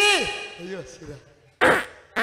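A man's voice through a handheld microphone making wordless vocal cries: a falling cry at the start, a shorter one a little later, and a loud short shout near the end.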